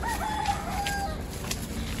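A rooster crowing once, a single call lasting about a second.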